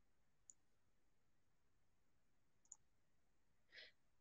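Near silence with two faint computer-mouse clicks, one about half a second in and one near three seconds in, then a faint intake of breath just before the end.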